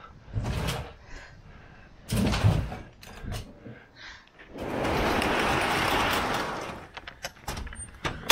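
Box truck's roll-up rear door pulled down by its strap, rolling down its tracks for about two seconds, then a few clicks as it closes. Earlier, about two seconds in, a heavy thump as the mattress is pushed into the cargo box.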